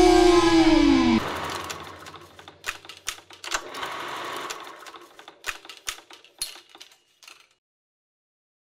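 Rock music ends on a held electric guitar note that bends down in pitch and cuts off about a second in. A fading tail of irregular sharp clicks and crackles follows.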